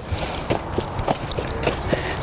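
Hoofbeats of a Belgian draft horse walking under a rider: a string of short, uneven knocks, about three a second.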